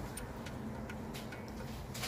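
A few faint, irregular clicks over a steady low hum.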